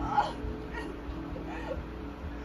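Three short whimpering cries over background music.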